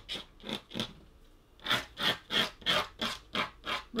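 Craft knife blade scratching across the surface of watercolour paper in short strokes, scraping out sparkles of light in the painted water. A few scratches, a pause of about a second, then a quicker run of about eight.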